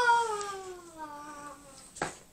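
A single long, pitched vocal call sliding slowly down in pitch for about a second and a half, then fading out.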